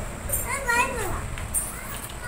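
Children playing indoors: a young child's high voice calls out once, its pitch gliding up and down, about half a second in.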